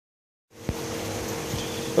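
A single low bump, then a steady mechanical hum with two constant tones over a light hiss.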